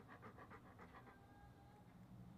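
Yellow Labrador retriever panting faintly, with quick, even breaths several times a second that die away about halfway through.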